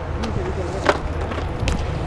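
Wind buffeting an outdoor microphone as a steady low rumble, with faint voices and two sharp clacks, one about a second in and one near the end.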